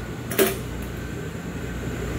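Steady low mechanical hum of room equipment, with one brief sharp sound about half a second in.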